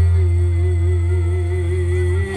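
Live band music accompanying a Topeng Ireng dance, played through loudspeakers: one long held note that wavers slowly, over a steady deep bass.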